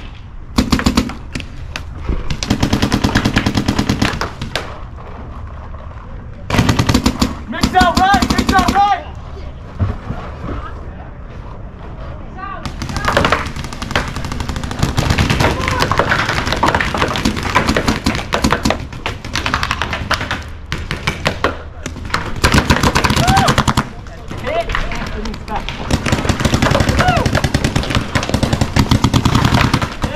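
Paintball markers firing in rapid, ramping bursts, with strings of shots that run almost without pause through the second half. Short shouted calls between players break through the firing.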